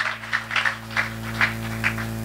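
Congregation clapping hands, sharp claps at about three a second over a steady low hum.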